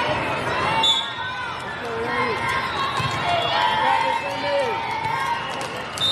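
Voices of players and spectators calling and chatting, echoing in a large indoor sports hall, with a short high whistle about a second in.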